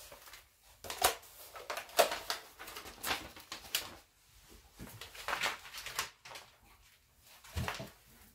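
Sheet of wrapping paper rustling and crinkling as it is handled and laid onto a wooden tabletop, in a series of short, irregular bursts.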